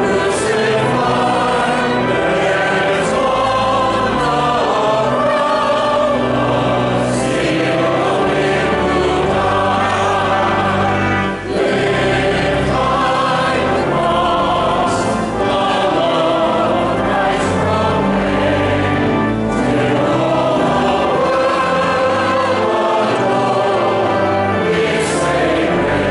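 Many voices of clergy and congregation singing a hymn together, with low notes held steadily beneath the voices. There is one brief break between phrases about eleven seconds in.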